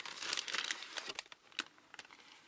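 Plastic bags holding styrene model kit parts crinkling and rustling as they are handled and lifted out of the box. The crackling is busiest in the first second, then thins to scattered crackles.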